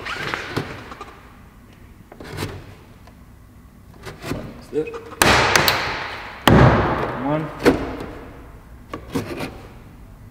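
Plastic door-panel clips on a BMW X1 rear door snapping loose as a plastic trim tool pries the panel off the metal door. Two loud snaps come a little past the middle, each ringing on for a second or so, with lighter clicks and scraping of the tool and panel between them.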